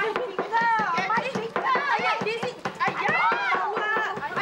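Several people's voices talking over one another, with frequent light knocks and clicks.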